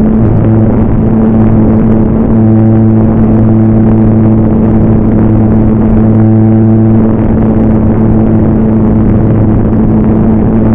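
RC model airplane's motor and propeller running steadily, heard from a camera mounted on the plane itself: a loud hum whose pitch holds level, strengthening a little at times, over heavy wind rush on the microphone.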